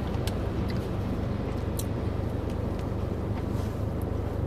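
Steady low rumble of a car running, heard from inside the cabin, with a few faint clicks.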